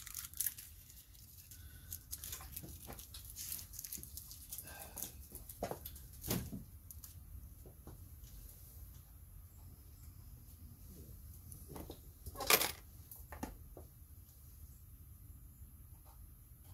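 Faint clicks and rustles of small parts being handled on a workbench while copper sealing washers are fitted to a brake master cylinder's banjo fitting, with a louder knock about twelve seconds in.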